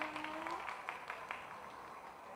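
Scattered audience clapping thinning out and dying away within about a second and a half, with a voice holding a drawn-out syllable for the first half second.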